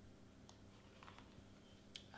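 Near silence, broken by a few faint computer mouse clicks: one about half a second in, one or two around the middle, and one just before the end.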